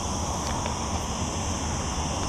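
Steady outdoor roadside background: a continuous high-pitched insect drone over a low, even rumble of wind or distant traffic, with no sudden events.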